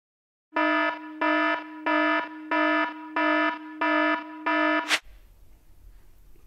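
Electronic countdown-timer alarm: a buzzy beep repeated seven times, about one and a half beeps a second, ending with a click about five seconds in.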